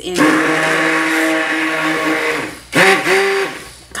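Epica stick blender running in a tub of soap-making oils: a long burst of steady motor whine with churning liquid, then a short second burst about three seconds in whose pitch dips and comes back up before it winds down. It is really powerful.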